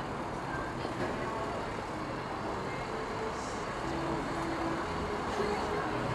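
Steady city street noise: a low rumble of road traffic.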